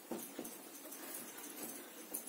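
Faint scratching and rubbing of a marker on a whiteboard, with a few small taps.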